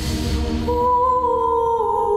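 Slow, sad background music: over a low pulsing bed, a held, wordless hummed melody comes in just under a second in.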